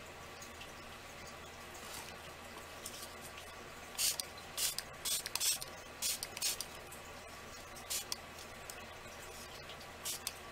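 Hand-pump spray bottle misting water in about seven short, uneven hisses, starting about four seconds in. The bottle has 'really just about had it'.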